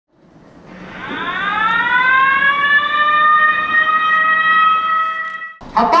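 Warning siren for tunnel blasting: it winds up, rising in pitch over about a second and a half, then holds a steady tone until it cuts off sharply near the end.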